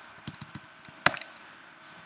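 A few scattered computer keyboard keystrokes, one louder click about a second in, as keyboard shortcuts open an IDE's refactor menu and its Extract Method dialog.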